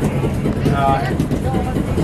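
Indistinct voices, with one short phrase about the middle, over a steady low rumble.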